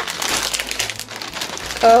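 Thin plastic shopping bag crinkling and rustling irregularly as a hand rummages through it. Near the end a loud, drawn-out exclamation cuts in over it.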